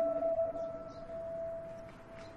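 Background score: a soft held chord that comes in at once, then thins to a single sustained note that slowly fades.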